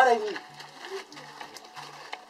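A short vocal exclamation right at the start, a brief low vocal sound about a second in, then a quieter stretch with a low tone that comes and goes and a few faint ticks.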